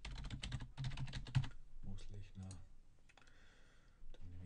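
Rapid typing on a computer keyboard, a quick run of key clicks over the first second and a half, then a few scattered keystrokes.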